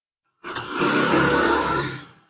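A woman's long, heavy sigh breathed out close to the microphone, starting with a sharp click about half a second in and lasting under two seconds.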